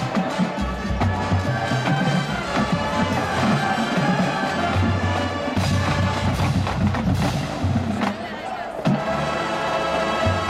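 Marching band playing live: brass over a steady drumline with bass drums, easing off briefly about eight seconds in before coming back in.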